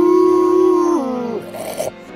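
A long howl from the animated giant robot Eva Unit-01, head thrown back: held on one steady pitch, then sliding down and dying away about a second in.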